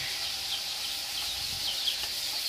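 Outdoor background ambience: a steady hiss with short, high chirps of small birds several times.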